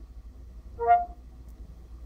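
Cortana's start-listening chime from a Nokia Windows Phone 8.1 handset: one short electronic tone about a second in, stepping up from a lower note to a higher one. It signals that the assistant has opened and is waiting for a voice command.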